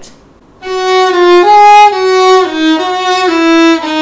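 Solo violin, bowed, playing a slow melody of held notes that step up and down in pitch, starting about half a second in.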